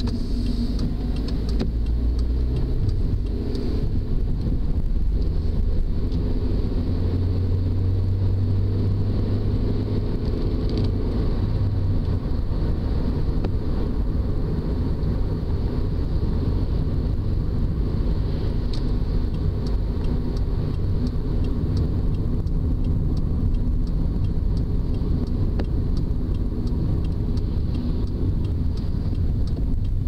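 Car engine and road noise heard from inside the cabin while driving: a steady low rumble, with the engine note growing stronger for a few seconds about a quarter of the way in.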